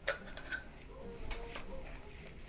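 Faint clicks and scrapes of a spoon scooping sticky tulumbe dough from a plastic bowl and packing it into a small metal mould, with a faint hiss in the second half.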